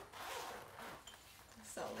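The zip of a soft padded glockenspiel carrying case being pulled open: a rasping run lasting about a second, then fainter handling.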